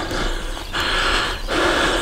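Footsteps on a grassy track, about three steps swishing through the grass in an even walking rhythm.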